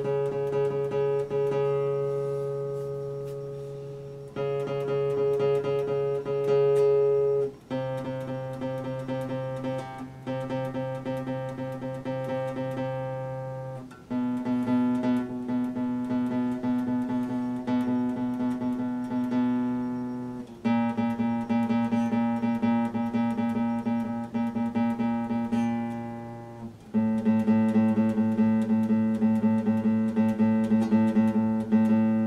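Classical guitar played fingerstyle: a rapid, even pattern of plucked notes over held bass notes, the chord changing every few seconds.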